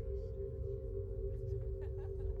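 Electronic drone from a large bank of oscillators, held on a steady chord of two strong middle-register tones over a low rumble, ringing like a singing bowl. Faint scattered clicks sit above it.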